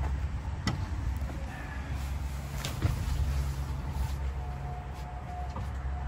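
A few sharp clicks and knocks over a steady low rumble, from someone climbing up into a small pop-up camper trailer through its canvas door.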